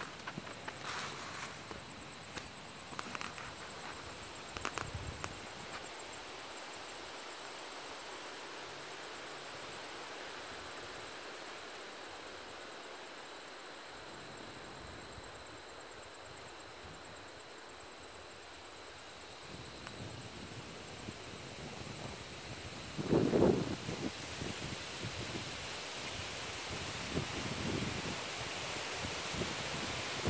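Outdoor meadow ambience: a breeze through the grass and leaves as a steady soft hiss, with a few faint clicks in the first seconds and louder rustling and bumps from about 23 seconds in.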